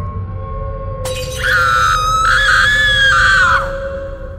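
Horror soundtrack: a low, dark music drone, then about a second in a sudden crash like breaking glass, followed by a high, wavering scream lasting about two seconds that cuts off, leaving the drone to fade.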